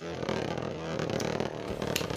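A Beyblade spinning top whirring steadily as its tip spins and grinds on the floor of a plastic stadium.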